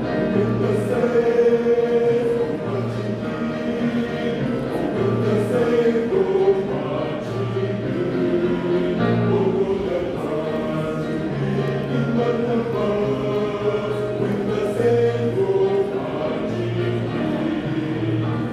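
Mixed choir of women's and men's voices singing a gospel song in sustained chords, with a bass part moving in steady held notes.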